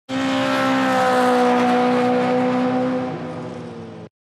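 Car engine sound effect held at high revs with a steady pitch that sags slightly, steps down about three seconds in, then fades and cuts off.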